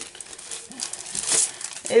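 Crinkling and rustling as a 6x6 paper pad and its packaging are handled, irregular and uneven.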